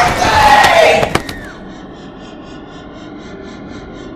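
A loud scream falling in pitch, over a held high tone, cut off sharply about a second in. Then a quieter steady drone with a soft, even pulse.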